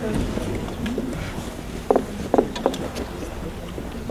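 Applause from a small outdoor crowd dying away into a few scattered handclaps about two seconds in, over a low wind rumble on the microphone and faint murmured voices.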